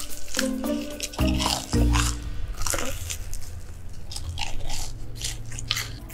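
Close-up crunchy biting and chewing of a breaded, fried chicken nugget, the crisp coating crackling sharply many times, over background music.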